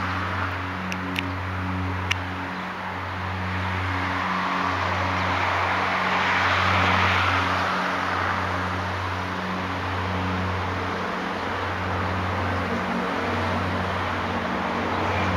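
Wind rustling through palm fronds, an even hiss that swells about halfway through and then eases. A low steady hum runs underneath and breaks off every second or two.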